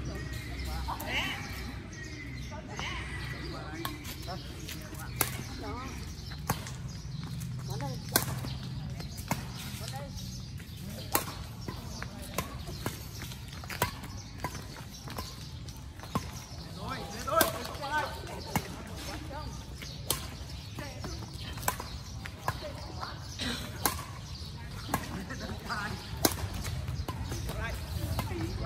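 Badminton rackets hitting a shuttlecock in a rally: sharp pops about once a second, the loudest about two-thirds of the way through.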